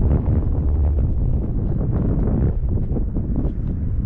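Wind buffeting an action camera's microphone: a loud, gusting low rumble.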